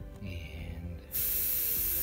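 Gravity-feed airbrush spraying paint: a steady hiss of air that starts about halfway in and keeps going.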